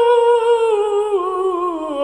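A male singer's wordless voice holding a high note, then sliding slowly lower in pitch with a wavering, uneven descent in the second half, as part of a continuous cadenza through his vocal range.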